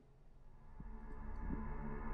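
Suspense film score swelling in: a low, steady drone of sustained tones that grows steadily louder, after a brief click at the very start.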